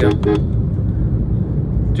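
Steady low rumble of engine and road noise inside a moving car's cabin, with the tail end of a spoken word at the very start.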